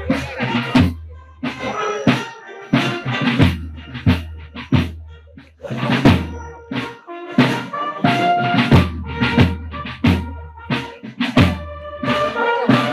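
A military marching band playing a march, with regular bass drum and snare beats under held brass notes.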